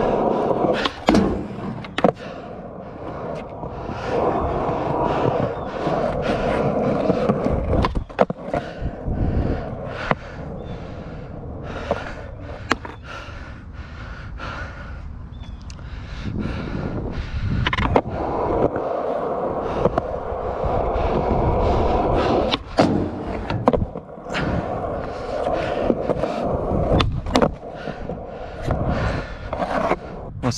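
Skateboard wheels rolling on smooth concrete, a steady rumble that swells and fades, broken again and again by sharp clacks of the board striking the ground.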